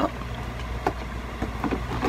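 A few faint clicks and taps of makeup packaging being handled, over a steady low hum.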